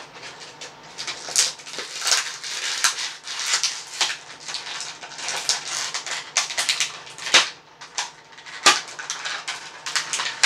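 Clear plastic blister packaging of a toy action figure crinkling and crackling as it is handled and pulled apart by hand, in many quick, irregular bursts.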